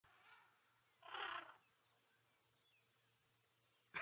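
Near silence, broken about a second in by one short, breathy sound from a young African elephant, with a fainter one just before it.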